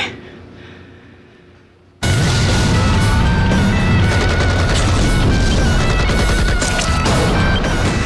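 Action-trailer soundtrack: a fading tail for about two seconds, then loud music cuts in suddenly along with rapid machine-gun fire and explosions.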